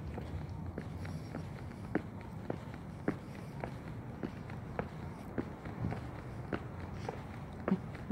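Footsteps of a person walking on a concrete sidewalk: short, even steps a little under two a second, over a low steady background noise.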